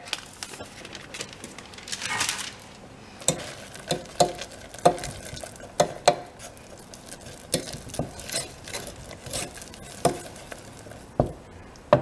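Wooden spoon stirring hot sugar syrup in a stainless steel saucepan as bicarb soda is mixed in for honeycomb, knocking and scraping irregularly against the pan. A brief soft rush about two seconds in.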